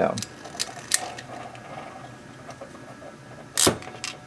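Hand ratcheting crimp tool crimping a BNC connector's metal ferrule onto RG-58 coax: a few clicks in the first second as the handles are squeezed, then one loud snap about three and a half seconds in as the tool releases and its jaws spring open.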